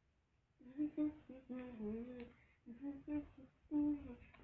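A young woman humming a tune without words, in short phrases with small rises and falls in pitch, starting about half a second in.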